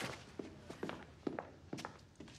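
Footsteps: a quick run of light, faint steps, about four a second.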